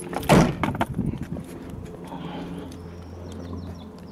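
A single loud thump just after the start, then light clicks and rustling over a faint low steady hum.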